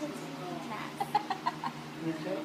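Laughter: a run of short, quick laughs about a second in.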